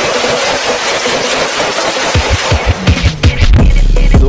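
Loud rushing noise from a car exhaust blasting flames, mixed with background music. About two seconds in, heavy bass drum kicks of an electronic beat come in and take over.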